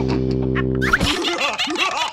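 A sustained background music chord holds until about a second in, then cuts out. High, rapid, wobbling cartoon-character laughter follows.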